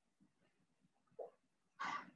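A man drinking a sip of water from a glass: a faint swallow about a second in, then a short breath near the end, with near silence around them.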